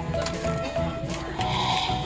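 Background music of held, stepping notes.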